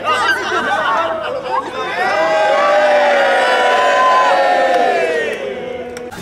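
A group of people cheering together: mixed voices, then a long joint shout from about two seconds in, slowly falling in pitch and tailing off near the end.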